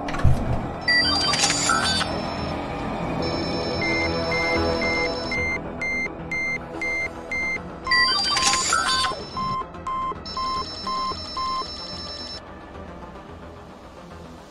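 Sci-fi gadget sound effects for the Omnitrix watch over a music bed: a hit right at the start, then a glittery electronic chime followed by a run of about nine evenly spaced beeps, about two or three a second. About eight seconds in it repeats with a second chime and a lower-pitched run of about seven beeps.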